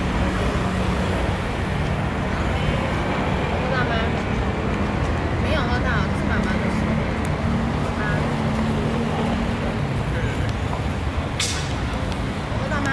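City street traffic noise: a steady rumble of passing and idling motor vehicles. Faint voices come through now and then.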